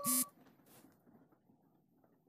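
A short electronic beep from a smartphone right at the start, the feedback tone it plays as its volume is changed, then only faint quiet sounds.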